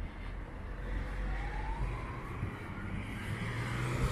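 Road traffic on a city street: a steady rumble of car engines and tyres. A faint thin tone rises above it partway through, then falls away near the end.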